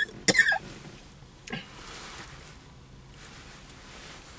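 A man coughing while eating a very spicy sandwich: one loud cough just after the start and a fainter one about a second and a half in, then quiet.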